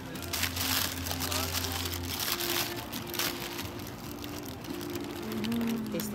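Paper wrapping crinkling as a bagel sandwich is unwrapped by hand, mostly in the first half. Background music with held notes and voices are also heard.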